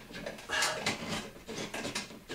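Cut-in recessed can-light housing scraping and rubbing against the sheetrock edge of the ceiling hole in a few short scrapes as it is worked down out of the hole.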